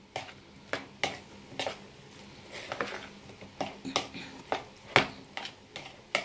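Metal spoon stirring a thick diced sausage, tomato and cheese filling in a plastic bowl: irregular clicks and scrapes as the spoon knocks the bowl, the sharpest tap about five seconds in.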